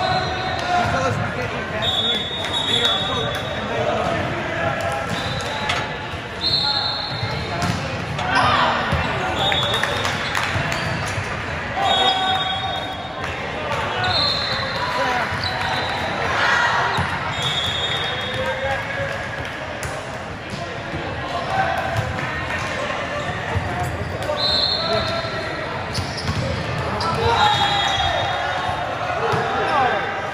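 Indoor gym din during volleyball play: balls being hit and bouncing, with sneakers squeaking on the court floor about a dozen times, over steady chatter from players and spectators in a large, echoing hall.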